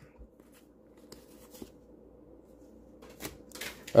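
Pokémon trading cards being handled: faint soft flicks and slides as the cards are flipped through and set down, with a couple of louder ones near the end.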